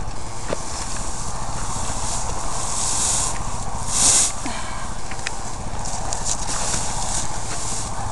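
Hay and mesh netting rustling as a net is worked over a round bale, with two louder hissing rustles about three and four seconds in, over a steady low rumble.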